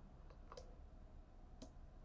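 Near silence with three faint, short clicks: two close together about half a second in and one more about a second later.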